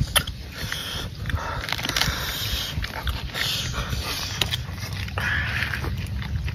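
Close-miked eating: wet chewing, smacking and slurping of a spicy raw shrimp salad, a string of short clicks and smacks over a steady low rumble.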